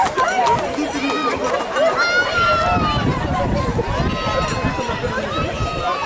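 Several people shouting and calling out over one another, with long drawn-out calls about two to three seconds in.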